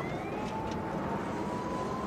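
Steady road and engine rumble inside a moving car's cabin, with a faint thin tone rising slowly in pitch through it.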